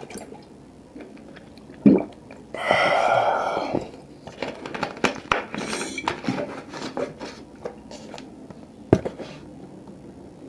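Gulping water from a plastic bottle, then a long breathy exhale. After that, the thin plastic bottle crinkles and clicks as it is handled, with one sharper click near the end.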